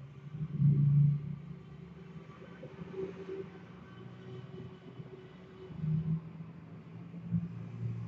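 A low, steady rumble with a slight hum in it, swelling louder about half a second in and again about six seconds in.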